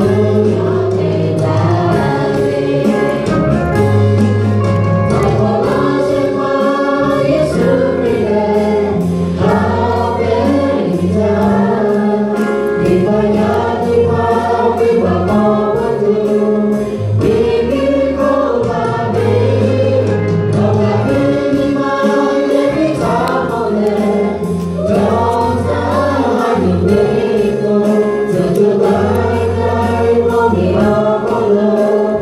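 Four women singing together into microphones over live accompaniment with a steady bass line and beat.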